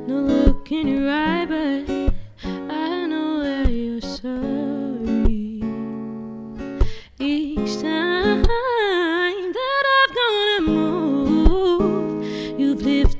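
A woman singing a song while accompanying herself on a strummed acoustic guitar with a capo. Her voice drops out briefly a little before halfway, leaving the guitar alone, then comes back.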